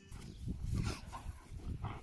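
Two wolfdogs play-fighting, with low grumbling growls and a few short, higher-pitched vocal yips.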